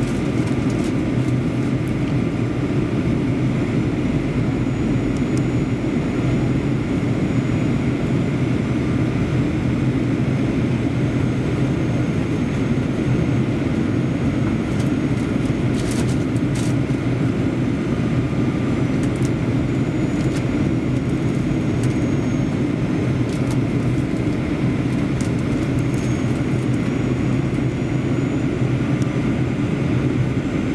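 Steady cabin noise inside a Boeing 737-800 airliner during descent: a constant low rumble of airflow and its CFM56 jet engines, with a faint steady high whine.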